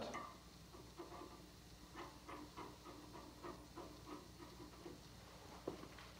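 Faint, irregular light clicks and taps of small metal parts being handled: a fender washer, spring and nut fitted and tightened onto the stud of a drill-press feed arm.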